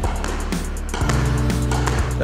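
Background music with a held bass line and a steady beat; the bass moves to a new note about a second in.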